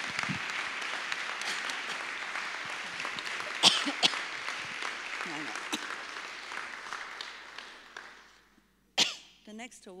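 Audience applauding, dying away about eight seconds in, with one sharp louder sound about three and a half seconds in.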